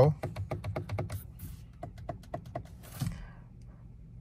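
Steering-wheel paddle shifters of a BMW 2 Series Gran Coupe being flicked: a rapid run of light plastic clicks in the first second or so, then a few scattered clicks up to about three seconds in.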